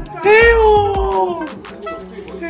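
A man's long, loud wailing cry of "aiyo" in fear of an injection: one drawn-out cry that sinks slowly in pitch and fades out over about a second.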